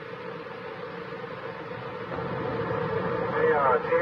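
Hiss and a steady hum on a police radio channel, recorded off the radio's speaker by a tape recorder, slowly growing louder between transmissions. A man's voice comes back on the radio near the end.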